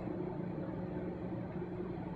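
Room tone: a steady, faint low hum with no distinct event.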